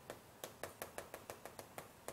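Chalk on a chalkboard while writing: a quick run of faint, sharp ticks from the chalk striking and dragging across the board, about six a second, starting about half a second in.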